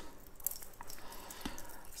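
Faint handling of a stainless steel Seiko 5 watch bracelet as its clasp is opened on the wrist, with a few soft clicks.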